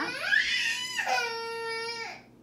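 A young child crying out in a long whine that rises in pitch and then holds on one note for about a second.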